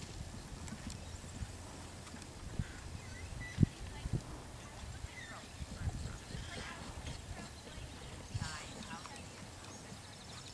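A pony's hooves thudding on soft sand arena footing as it canters round a jumping course, with one sharper, louder thump about three and a half seconds in. Faint voices in the background.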